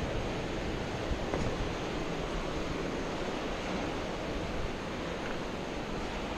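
Ocean surf breaking on the rocks at the foot of the cliffs, a steady wash of noise, with wind buffeting the microphone.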